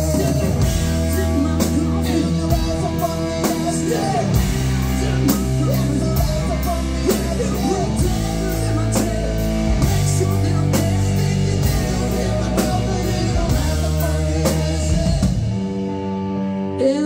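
Live rock band playing an instrumental passage on electric guitar, bass guitar and drum kit. A lead guitar line bends and wavers in pitch over sustained bass notes and steady drum hits.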